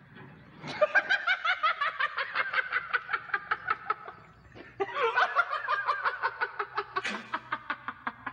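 A person laughing hard in long runs of rapid, high-pitched 'ha' pulses, about five a second, with a brief break for breath about halfway through.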